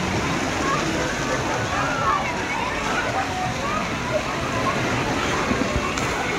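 Steady rush of running and splashing water in a shallow water-park pool, with a babble of children's voices and calls in the background.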